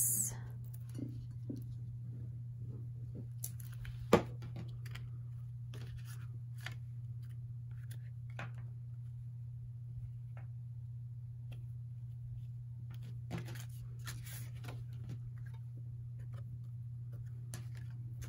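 Quiet handling of paper and crafting tools on a desk: scattered light clicks and short rustles, with one sharper tap about four seconds in, over a steady low hum.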